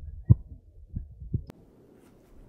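Low rumble and irregular thumps on the microphone, the strongest about a third of a second in, ending in a sharp click about one and a half seconds in. After the click only a faint hiss remains.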